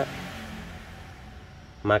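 A man's voice says one short word at the start and begins another near the end; between them there is only faint, steady background noise.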